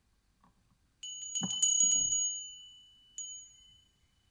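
Small hand-held metal chime struck several times in quick succession about a second in, ringing out in a high, clear tone that slowly fades, then struck once more near the end.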